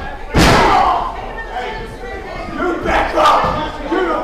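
A wrestler's body slams down onto the ring with one loud bang about a third of a second in. The crowd shouts and yells in reaction, swelling again near the end.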